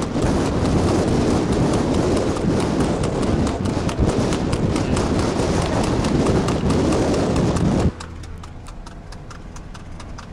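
Shod hooves of a pacing colt striking asphalt at speed, heard under heavy wind and road rush from a car driving alongside. About eight seconds in, the rush stops abruptly, and the hoofbeats come through as clear, regular clicks over a steady low car engine hum.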